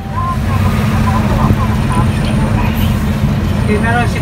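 Steady low rumble of a moving road vehicle's engine and road noise, heard from on board, with faint voices in the background.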